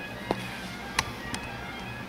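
Three light knocks, the loudest about a second in, as a sliding camera is handled and shifted on the table, over faint background music.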